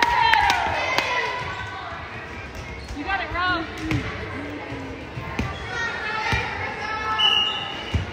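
A volleyball bouncing a few times on a hardwood gym floor, sharp echoing knocks in a large gym, with voices around it.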